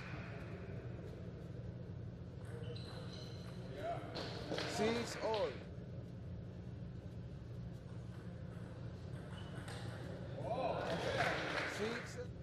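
Table tennis ball ticking off bats and the table in a rally, then a player's shout about four seconds in and another shout near the end, over a steady hall hum.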